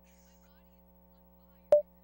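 Faint steady electrical hum, then one short, loud electronic beep near the end.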